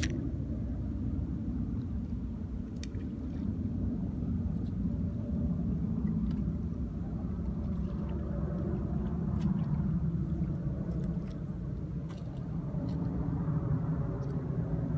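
Steady low outdoor rumble that swells and eases slowly, with a few faint ticks.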